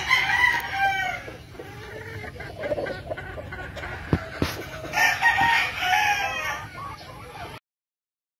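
Gamefowl roosters crowing: one crow at the start and another about five seconds in, with a couple of short knocks between them. The sound cuts off suddenly near the end.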